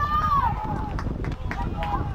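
A loud, high shout that falls in pitch right at the start, then a shorter call near the end, over a steady low rumble of wind on the microphone.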